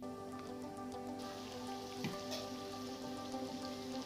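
Goat meat frying in oil in a metal kadai, a steady sizzle with many small crackles, under soft background music of held tones.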